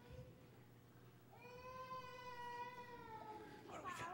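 A young child's high-pitched voice making one faint, drawn-out cry of about two seconds that sags in pitch at the end, followed by a short gliding call near the end.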